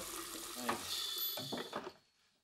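Water running from a pre-rinse spray faucet into a commercial dish sink, a steady hiss, with brief words spoken over it. The sound cuts off abruptly at the end.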